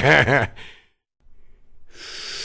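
A man laughs in short rhythmic pulses for about half a second and stops. After a brief silence, a long breathy hiss of a drawn breath begins near the end.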